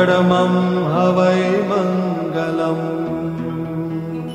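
Devotional chanting over a steady drone. A voice comes in suddenly with a rising glide and holds long, wavering notes. After about two and a half seconds it stops and only the drone carries on.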